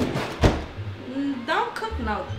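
A refrigerator door shutting with a single sharp thump about half a second in.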